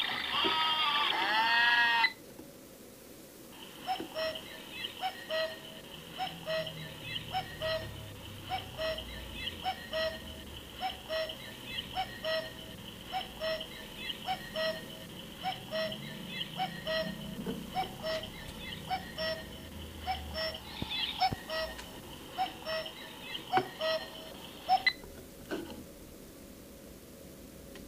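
Electronic cube alarm clock sounding through its small speaker. The first two seconds are a loud warbling electronic sound. From a few seconds in, a steady high beeping tone with short regular pips, about one and a half a second, runs until it cuts off suddenly near the end.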